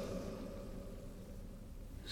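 Faint room tone in a pause between spoken lines. The echo of the last word fades away in the first half-second, leaving a low, steady hiss.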